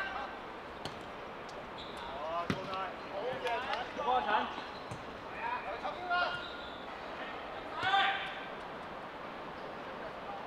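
Football players shouting to one another during a small-sided game, the loudest call near the end, with a football being kicked several times on artificial turf.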